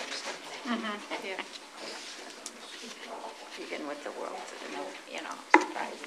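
Indistinct talk among people in a room, too low to make out words, with one sharp knock near the end.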